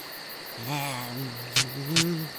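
A man's voice gives two wordless, wavering hums like a drawn-out "mm-hmm", the character voice of the clay fly. A sharp click comes about one and a half seconds in and another near the end. Under it all runs a faint, high, evenly pulsing chirping.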